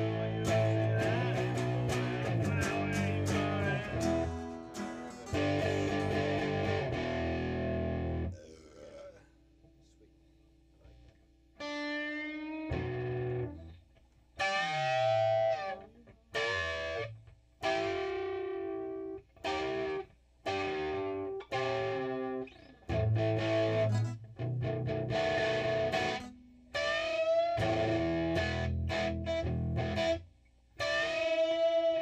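Electric guitar played through distortion and effects: a run of strummed chords, a pause of about three seconds, then short stop-start phrases with bending, wavering notes.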